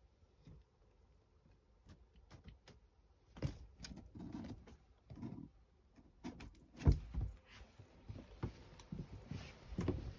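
Cardboard boxes and packaging rustling and knocking as a cat pushes about among them, with scattered clicks and one louder thump about seven seconds in.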